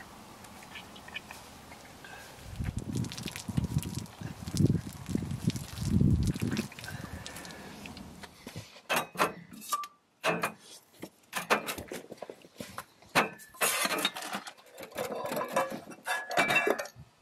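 Irregular low rumbling gusts, like wind buffeting the microphone, in the first half. Then, after a brief drop in sound, a run of light clinks, taps and knocks from cups and camp coffee gear being handled on a metal tailgate table, busiest near the end.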